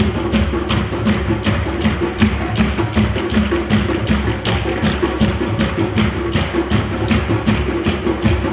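An ensemble of African hand drums playing a fast, even, unbroken rhythm of sharp strokes.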